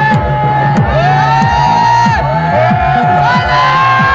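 Loud electronic dance music from a sound system: repeated kick drums and a held bass line, with synth lines sliding up and down in pitch, and the crowd shouting over it.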